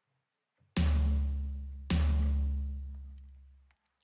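Two hits of a sampled electronic tom, a little over a second apart, each a sharp attack with a deep, boomy low body that dies away; the second hit cuts off the first and its tail fades out over nearly two seconds. The tom's volume envelope has its decay and release turned down to shorten the low tail so it won't clash with the bass and kick.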